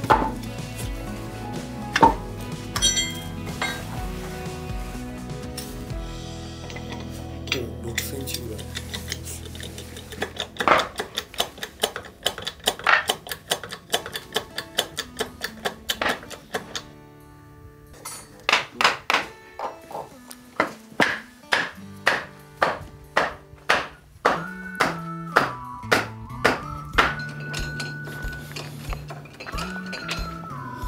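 Background music: an instrumental track that holds sustained notes at first, picks up a steady beat about ten seconds in, and adds a sliding melody line near the end.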